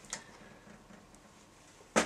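A light click just after the start and a much fainter tick about a second later, from hands handling a small two-stroke kart engine on a metal workbench; otherwise quiet.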